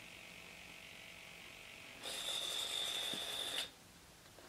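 Electric retract units and gear-door servos whirring steadily for about a second and a half as the model landing gear folds up and the doors close over it, then stopping abruptly.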